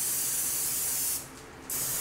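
Aerosol olive oil cooking spray hissing in two bursts: the first cuts off just past a second in, and the second starts near the end.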